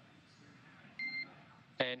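A single short electronic beep on the mission radio loop, a steady high tone lasting about a quarter second about a second in, over faint hiss. A man's voice starts on the radio near the end.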